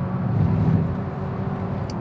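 Abarth 500e heard from inside the cabin while driving on track: a steady low hum with road and tyre noise.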